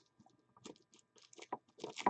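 Plastic shrink wrap on a card box crinkling under the fingers: faint, scattered crackles that come closer together toward the end.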